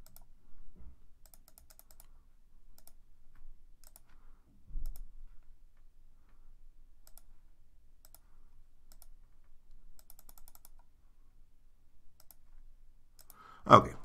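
Computer mouse clicking, faint and scattered, some clicks coming in quick runs of five or six.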